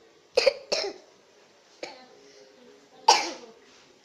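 A person gives short, sharp cough-like bursts from the throat: two close together about half a second in, and a louder one about three seconds in, with a faint click between them.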